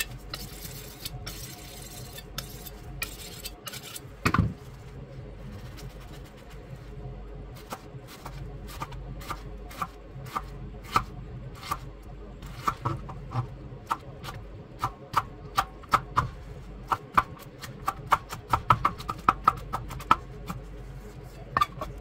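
Chef's knife dicing an onion on a plastic cutting board: a run of short taps of the blade on the board, sparse at first with one heavier knock about four seconds in, then coming faster, several a second, through the second half.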